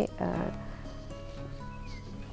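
Soft background music with faint held tones under a pause in a woman's talk, with a short vocal sound just after the start.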